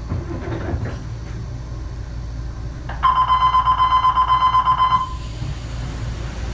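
An electric warning bell rings with a fast, even pulse for about two seconds, starting about three seconds in, over the steady low hum of a train standing at a station platform.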